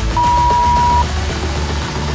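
A workout interval timer's single long beep, steady in pitch and lasting just under a second, marking the end of one exercise and the switch to the next, over electronic background music.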